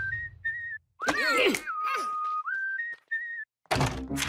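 A whistled tune of short, clear notes. About a second in, a brief swishing cartoon sound effect with sliding pitches cuts across it, then the whistling goes on with a long held note and two short ones. A sudden thud follows near the end.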